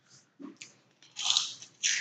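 Mouth noises of chewing Pirate's Booty, a puffed corn-and-rice snack: two short, soft bursts of crunching about half a second and a second and a half in.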